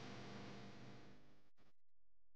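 Near silence: faint room tone that cuts out about one and a half seconds in.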